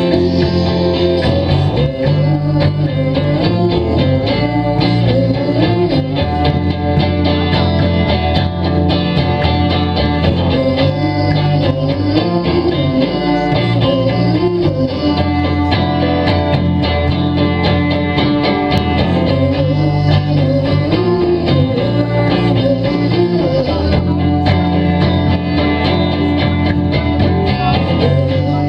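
Live indie rock band playing an instrumental passage: electric guitar lines over bass guitar and a steady drum beat.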